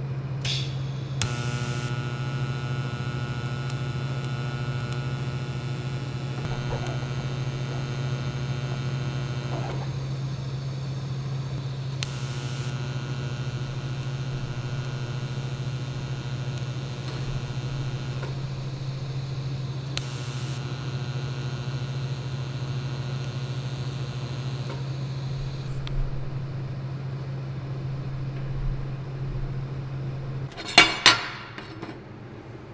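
TIG welding arc striking three times, each with a sharp crackle at the start, then buzzing steadily for several seconds while corner tack welds are laid across a gap in square tubing. A steady low hum runs under it throughout.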